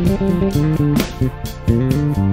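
Harley Benton PJ-5 SBK Deluxe five-string electric bass played fingerstyle: a moving line of low notes, changing several times a second, with sharp percussive ticks on the beat.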